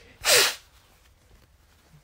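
A person sneezing once, a short sharp burst of breath.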